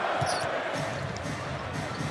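Basketball game in an arena: a steady crowd murmur, with the ball bouncing on the hardwood court in a few short knocks.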